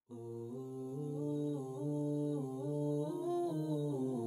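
Background music: an a cappella vocal nasheed of wordless humming voices, a low held drone under a slow melody that moves step by step. It starts suddenly out of silence.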